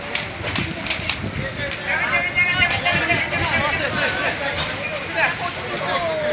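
A house fire burning with crackling and popping, with people's voices calling out over it.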